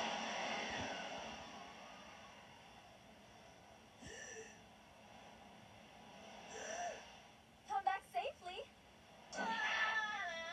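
Cartoon characters' short wordless vocal sounds, played back through a computer speaker: a couple of brief utterances, then a quick cluster of them, and a longer wavering cry near the end. A hiss fades away over the first two seconds.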